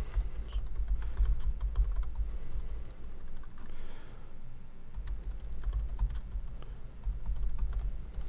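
Typing on a computer keyboard: a quick, continuous run of key clicks over a low rumble.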